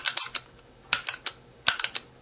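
Sharp metallic clicks in three quick clusters from the trigger and hammer of an AR-style lower receiver being worked by hand.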